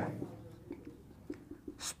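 Marker pen writing on a whiteboard: a few faint, short strokes spread through the moment.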